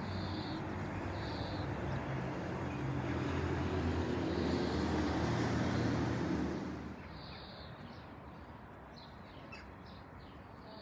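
Outdoor ambience: a low engine rumble grows louder, then cuts off sharply about seven seconds in, leaving quieter background. Small birds chirp now and then throughout.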